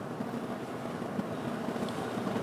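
Steady room tone: an even low hum and hiss with no distinct events.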